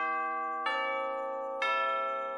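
Background music of bell-like chimes, with a new note or chord struck about once a second and each one ringing on as it fades.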